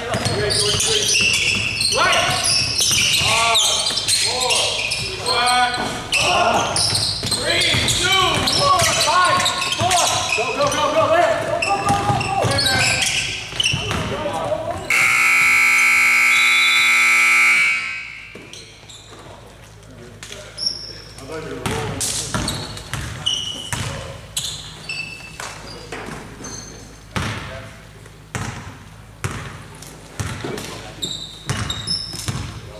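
Gymnasium scoreboard buzzer sounding one loud, steady horn note for about three seconds, midway through. Before it are players' voices on the court; after it comes a basketball bouncing on the hardwood floor.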